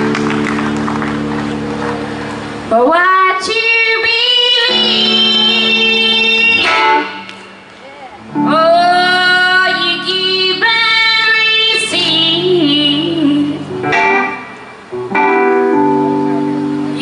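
A live band holds a sustained keyboard chord, then a woman's voice comes in about three seconds in. She sings long, wavering notes over acoustic guitar, keyboard and bass, with short breaks between phrases.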